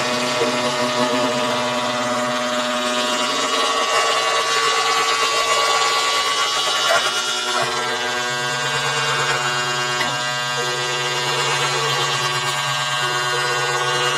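Live experimental drone music: a dense, continuous mass of sustained overlapping tones that shift in steps, with a low drone that grows stronger about halfway through.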